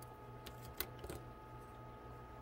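A few faint, light clicks of small acrylic pieces and metal tweezers being handled, the sharpest a single tick near the middle, as a laser-cut chandelier piece is worked free of its sheet.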